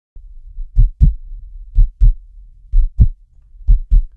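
Heartbeat sound effect: four slow lub-dub beats, each a pair of low thumps, about one beat a second.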